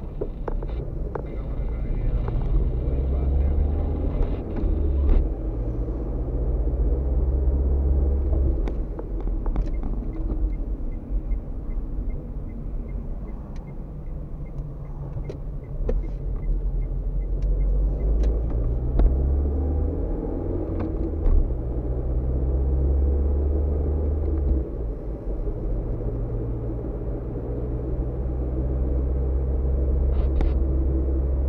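Car engine and road noise heard from inside the cabin while driving, a steady low rumble whose engine note shifts up and down in steps with speed and gear changes, with a few short knocks from the road.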